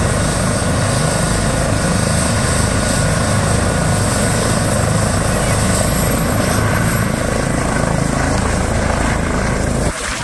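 Airbus H135 trauma helicopter's rotor and twin turbines running loud and steady during takeoff. A thin high whine rises slightly in pitch through the second half.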